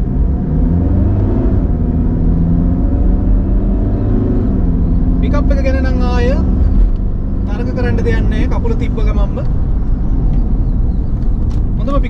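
Mitsubishi Pajero's engine heard from inside the cabin, its pitch rising as it picks up speed and dropping back about four seconds in, over steady road rumble.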